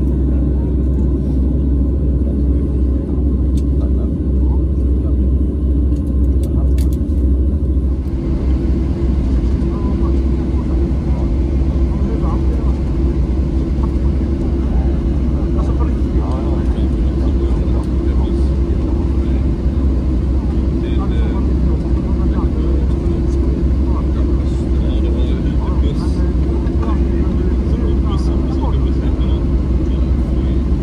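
Cabin noise inside a Boeing 737-700 taxiing: a steady, loud low rumble from its CFM56 engines and airframe, with a steady hum above it.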